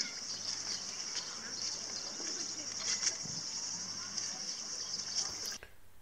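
Steady, high-pitched drone of cicadas in summer heat, with faint voices beneath it. It cuts off abruptly near the end.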